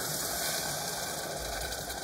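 A cup of water poured into a hot saucepan of oiled rice, hissing and sizzling steadily as it hits the hot oil and pan.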